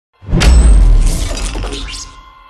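Intro logo sound effect: a sudden loud deep boom with a shattering crash, starting about a quarter second in and fading away over the next second and a half.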